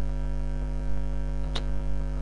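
Steady electrical mains hum with its stack of overtones, picked up on the recording, with one brief click about one and a half seconds in.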